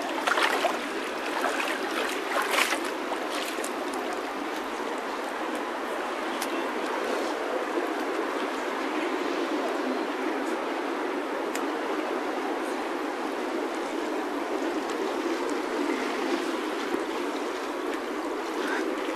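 Steady rushing of a fast-flowing river current, with a few sharp ticks in the first few seconds.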